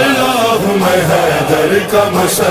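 A male voice chanting an Urdu manqabat, a Shia devotional song in praise of Imam Ali, singing the word "hai".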